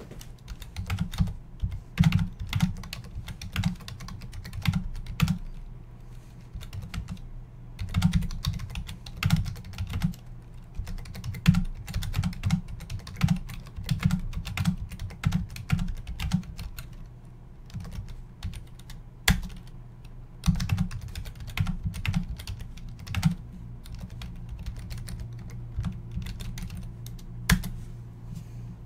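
Typing on a computer keyboard: irregular runs of quick key clicks with short pauses, over a steady low hum.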